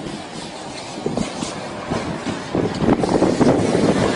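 Sandstorm wind buffeting a phone microphone: an uneven, gusty rumble that grows louder about two and a half seconds in.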